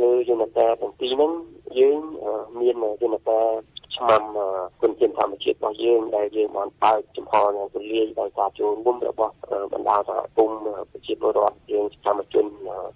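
Speech only: a voice talking without pause, with a narrow, muffled sound typical of a radio broadcast.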